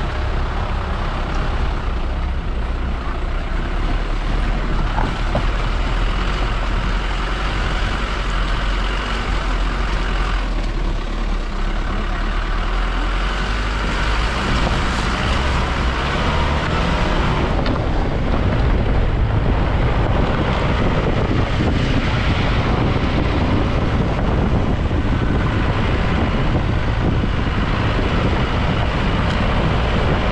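A jeep driving along a rough gravel mountain road: a steady rumble of engine and tyres on gravel.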